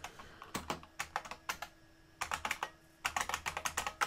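Computer keyboard being typed on: quick keystroke clicks in three short runs, with brief pauses between them.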